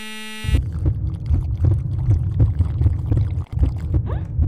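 A wrong-answer buzzer sound effect for about half a second. Then a loud, uneven low rumbling as soda is sucked up through a straw from a bottle.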